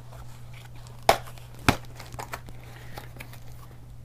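Small cardboard box being pulled open by hand: its flaps crinkle and rub, with two sharp snaps about a second and a second and a half in.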